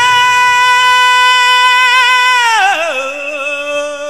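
Rock music from a live band: one long held note that slides down to a lower, wavering note about three seconds in.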